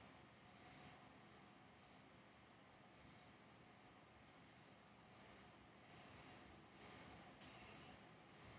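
Near silence: room tone, with a few faint, short sniffs as whisky is nosed from a glass.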